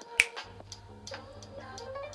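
A single sharp finger snap just after the start, the loudest sound, over background music with a steady beat.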